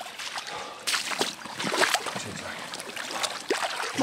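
Lake water splashing and sloshing around a carp retention sling as it is emptied and lifted out, water pouring from the wet mesh, loudest from about one to two seconds in.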